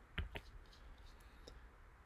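Two quick computer mouse clicks, a fraction of a second apart.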